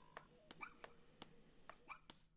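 Faint, quick footsteps of a small child walking away across a hard floor, about three steps a second, with a couple of faint dog whimpers in the background.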